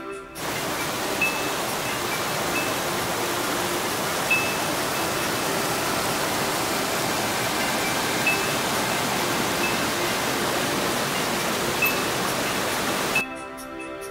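Small rocky brook cascading over boulders: a steady rush of running water. It cuts in about half a second in and cuts off abruptly near the end, with soft background music underneath.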